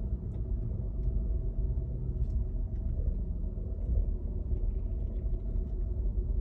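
Steady low rumble of a car's engine and road noise heard from inside the cabin while driving, with a few faint clicks.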